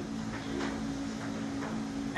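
A steady low hum of two close tones over faint, even background noise.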